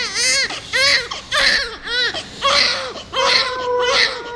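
A newborn baby crying: a quick run of short wails, each rising and falling in pitch, one after another with brief breaths between.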